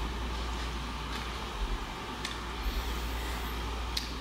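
Steady room noise, a low hum under an even hiss, with a couple of faint clicks.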